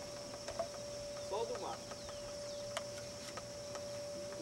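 Faint distant voices of people calling out, once about a third of the way in, over a steady thin high tone and light hiss with a few faint ticks.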